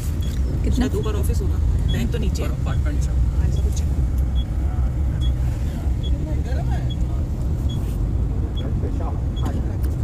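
Low, steady rumble of a city bus's engine and road noise heard from inside the passenger cabin, with scattered bits of voices and a faint high tick repeating about every half second through the second half.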